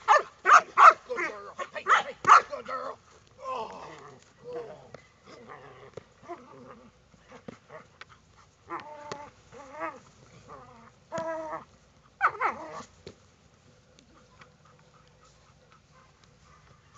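A large dog barking in loud, rapid bursts, as in bite or protection training. A run of barks fills the first three seconds, a few scattered barks come between about 9 and 13 seconds, and then it goes quiet.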